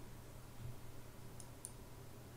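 Two faint computer mouse clicks in quick succession about a second and a half in, over a low steady hum.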